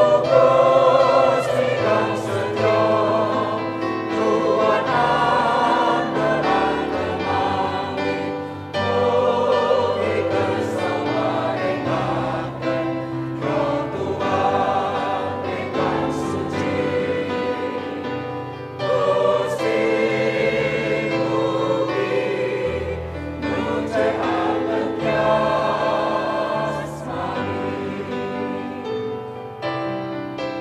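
Church choir of women's and men's voices singing a hymn in parts, with sustained low notes underneath.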